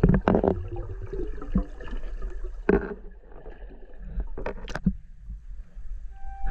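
Underwater sound picked up by a submerged action camera: a steady low rumble with water sloshing and gurgling around it. There are louder splashy gushes about a third of a second in, near three seconds, and twice between four and five seconds.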